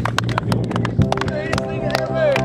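A small group clapping and cheering, over background music with a steady bass line.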